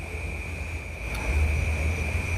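Steady low rumble, a little louder in the second half, under a constant thin high-pitched whine: background noise in a pause between spoken lines.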